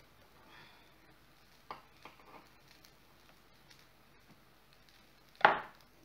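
A few faint clicks of a fork prying baked pastry cups out of a metal cupcake-style mould, then a single sharp knock on the wooden board near the end.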